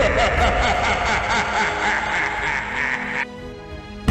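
Many overlapping copies of a boy's laugh layered into a chorus, over background music. About three seconds in the laughing stops and a quieter held musical tone is left.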